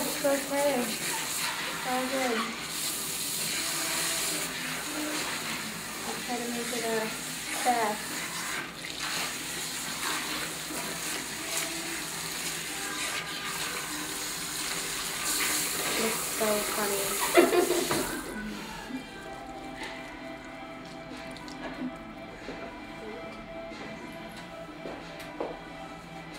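Salon backwash hand sprayer running water over hair and into the basin as shampoo is rinsed out, a steady hiss and splash that stops about 18 seconds in.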